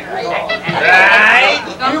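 A voice giving a long, wavering, high-pitched cry about a second in, like a whoop from the crowd, amid talk in a noisy bar.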